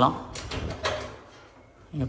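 Metal front panel of a kitchen range hood being pulled down and handled: two brief scraping clicks, about half a second and a second in.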